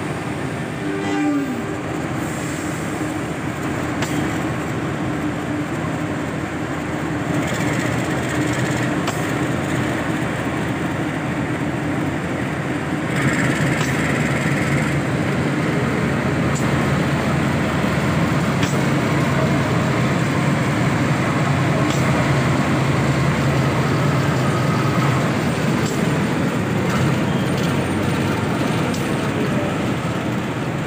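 KAI CC201 diesel-electric locomotive running as it moves slowly past during shunting, a steady low diesel drone that gets louder from about halfway through as it comes close. A brief falling tone sounds about a second in.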